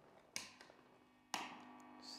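Two sharp clicks about a second apart from a drive pedal's switch being pressed by hand, switching on the overdrive. A faint steady hum follows the second click.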